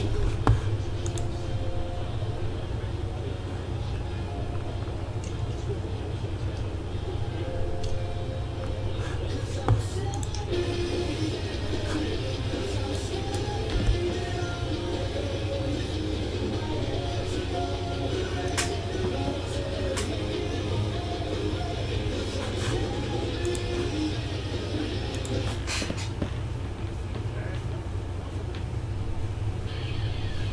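Quiet background music with faint voices under it, over a steady low hum.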